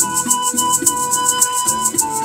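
Andean pan flute playing a melody of long held notes, with a maraca shaken in a quick even rhythm over a plucked-string accompaniment.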